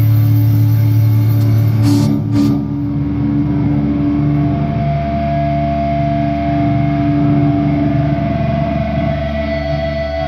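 A heavy metal band playing live: distorted electric guitar and bass hold long, ringing chords. Two sharp hits come about two and a half seconds in, then the cymbals drop out and the guitar rings on with a steady feedback tone.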